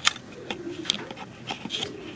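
A handful of sharp, light clicks and taps, about five in two seconds, over faint murmuring voices.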